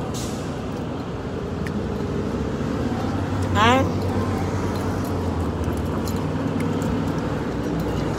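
City street traffic noise, with a road vehicle's engine humming low for a few seconds in the middle. A short rising voice sound cuts in about three and a half seconds in, the loudest moment.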